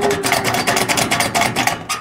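Foley sound of a rusted gate being forced against its seizure: rapid rattling clatter with a steady creaking tone running under it, cutting off abruptly at the end.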